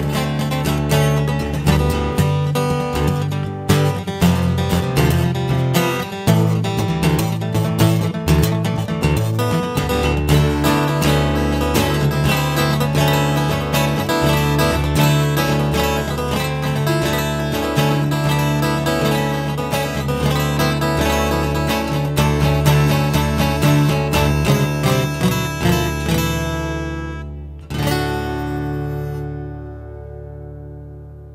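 Acoustic guitar strummed in a steady rhythm through an instrumental passage. Near the end the playing fades, then a final chord is struck and left to ring out.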